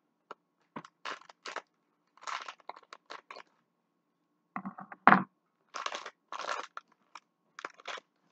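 A plastic bag of pecans crinkling and rustling in short bursts as it is handled and opened. The loudest crunch comes about five seconds in.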